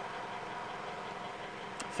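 Mitsubishi Triton's 4D56 diesel engine idling steadily at about 650 rpm, heard faintly, with a light tick near the end.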